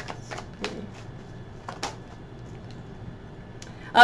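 A deck of oracle cards being shuffled and a card drawn: a few short, irregular card flicks and taps.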